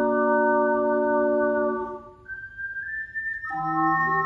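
An ocarina septet of seven ocarinas, from soprano down to contrabass, holds a sustained chord that stops about halfway through. A single high line steps upward through the gap, and then the full ensemble comes back in with a low bass note near the end.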